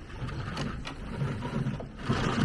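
Small servo whirring as it swings the boat's string-and-pulley rudder steering left and right, with two sharp clicks about half a second and just under a second in.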